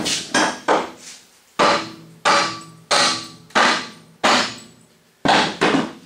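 Sledgehammer blows on the steel rear of a flatbed trailer: about ten hard strikes in a steady rhythm, roughly two-thirds of a second apart with a couple of short pauses, each leaving a brief metallic ring.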